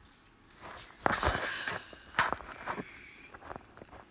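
A person's breath near the microphone: a long breathy exhale about a second in, with a few short clicks and small handling noises.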